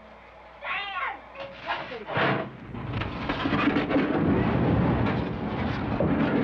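A person's brief high cry, then from about two seconds in the steady rushing roar of a large set fire burning, with flames and smoke filling a film stage.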